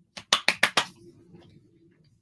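A quick run of about six sharp clicks in under a second, then quiet room sound.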